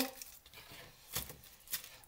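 Quiet kitchen with two short, soft knocks, about a second and a second and a half in, as an onion and a knife are handled on a chopping board.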